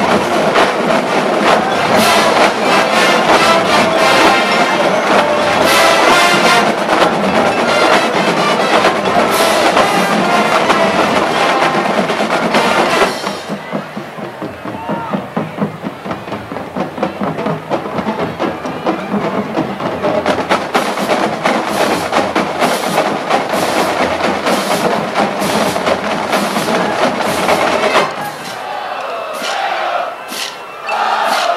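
College marching band playing a field show: the full band plays loudly, then about 13 seconds in the winds drop out and mostly drums carry on with quick rhythmic strokes, building until they break off near the end.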